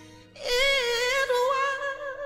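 Soul/R&B ballad recording: a woman sings a held note with vibrato, coming in about half a second in, over soft steady backing.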